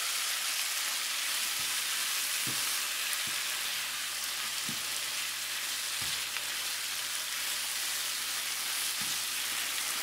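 Squid and onions in a sauce sizzling steadily in a hot nonstick frying pan as a spatula stirs them, with a few light knocks of the spatula against the pan. The sauces have just gone in and are cooking down.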